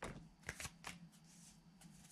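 Tarot cards being shuffled by hand: a few faint, separate card snaps and slides.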